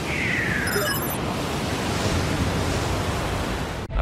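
Television news channel's logo ident sound effect: a loud rushing whoosh of noise with a falling tone in the first second and a brief high glittering shimmer, running on steadily until it cuts off suddenly near the end.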